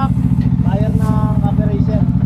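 Bajaj Dominar 400's single-cylinder engine idling steadily with an even, rapid pulse.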